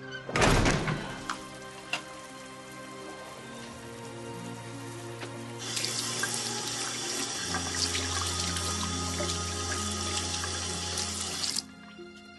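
Bathroom tap running into a washbasin, starting suddenly about six seconds in and shut off just before the end. A single heavy thump comes near the start.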